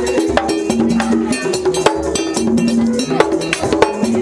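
Vodou drumming: a peg-tuned skin drum beaten with a wooden stick and a bare hand in a fast, steady rhythm, with sharp ringing metallic strikes like a bell. Held tones sit beneath the beats.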